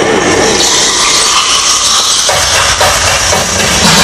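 A loud, steady hiss of noise over the sound system's dance music. The bass drops away and then comes back in about two seconds in.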